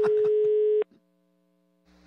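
Telephone ringback tone heard down the caller's line: a single steady beep about a second long, then silence, then a faint line hum near the end as the call connects.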